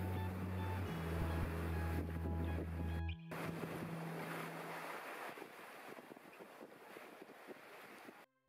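Wind on the microphone and sea wash from a sailboat under way. Background music runs under it for about the first three seconds and stops at an abrupt cut, after which the wind and water noise carries on more quietly.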